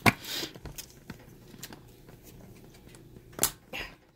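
Handling noise from a phone camera and its holder being knocked and set back in place: a sharp click at the start with a brief rustle, light scattered taps, and two louder knocks about three and a half seconds in.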